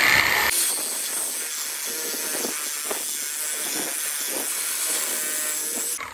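Battery-powered reciprocating saw cutting through an aluminium engine oil cooler: a steady rasping saw noise, loudest in the first half second.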